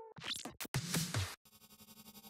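Sound-effect details from an electronic beat: a few quick noise whooshes and sweeps in the first second and a half, then a faint sustained synth riser that slowly grows louder.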